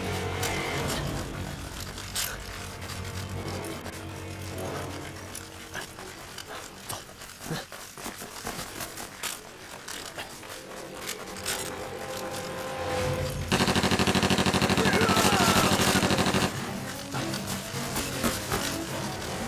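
Action-film soundtrack: background score with scattered sharp hits and clicks, then, about thirteen seconds in, a sudden loud, rapid rattling burst that lasts about three seconds and cuts off abruptly.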